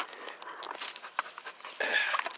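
Footsteps crunching on loose gravel, in an irregular run of short scrapes, with a louder scuffing crunch near the end.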